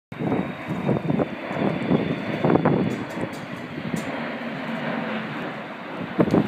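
Jet engines of a Boeing E-3 Sentry AWACS, four-engined, flying low past: a dense, steady rumble with a faint high whine early on.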